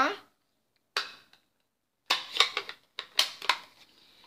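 Plastic stamp ink pad case being snapped shut and handled on the craft mat: a sharp click about a second in, then two short clusters of quick clicks and knocks.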